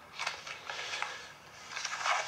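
Paper advertising flyers rustling and crinkling as they are handled, in about three short bursts.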